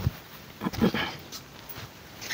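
Saree fabric rustling and swishing as it is lifted and unfolded by hand, in a few short bursts.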